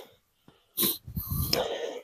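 A person's short sharp sniff, then a longer breathy exhale close to the microphone.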